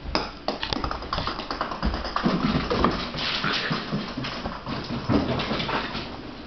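Puppy's claws clicking and skittering on a slippery hardwood floor as it scrambles and slides after a toy, a rapid irregular patter, with a thump at the very start.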